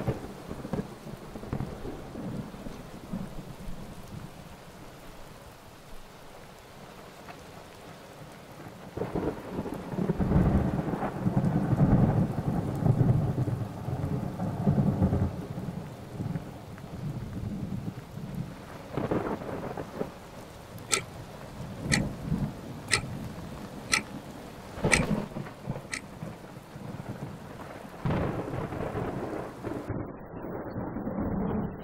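Thunderstorm: steady rain, with a long roll of thunder swelling up about nine seconds in. Later come six sharp ticks about a second apart.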